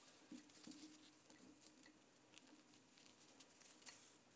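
Near silence: faint scattered ticks and rustles of fabric and thread being handled during hand stitching, over a faint low hum.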